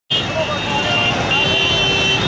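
Street din of a large crowd talking over each other, mixed with motorcycle and traffic noise.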